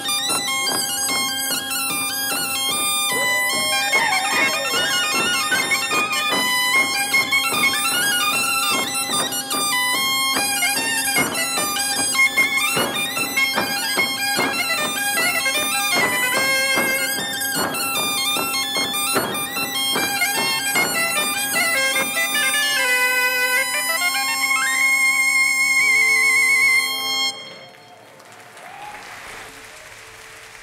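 Breton traditional dance music from a live ensemble: fast reed melody lines over a steady drone. The music stops suddenly about 27 seconds in, and a single note hangs on while applause begins.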